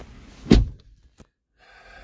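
Suzuki Vitara's car door shut once, a single thunk about half a second in, heard from inside the cabin.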